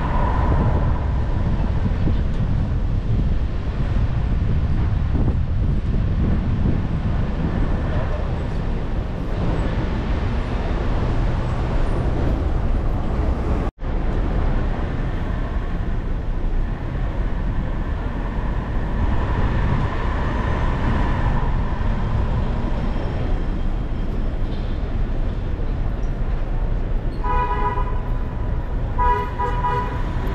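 Downtown city traffic noise with a steady low rumble of cars and the street, then a car horn honking twice near the end. The sound drops out for an instant about halfway through.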